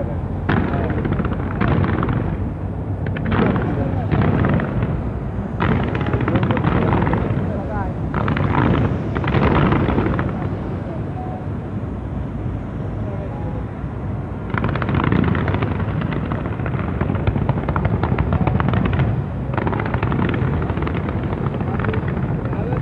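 A large fireworks display going off in repeated volleys of bangs and rapid crackling, with a low rumble under it and a long unbroken run of crackling about two-thirds of the way in.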